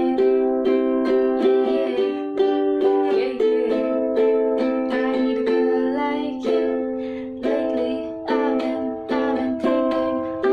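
Ukulele strummed in chords in a steady rhythm, each stroke ringing on. The strumming eases about seven seconds in, then a new chord pattern begins.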